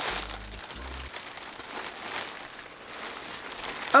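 A plastic mailer bag and its inner wrapping being torn open and crinkled by hand: crackly plastic rustling with a few louder rips near the start and about two seconds in.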